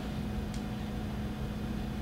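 Steady low room hum between sentences of a talk: an even drone with one faint held tone underneath.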